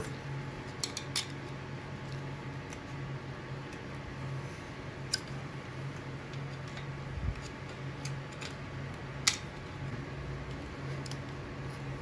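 Faint scrapes and a few sharp clicks from a block heater's plastic power-cord plug and locking collar being worked back and forth by hand to free it from the heater, with the clearest clicks about five and nine seconds in.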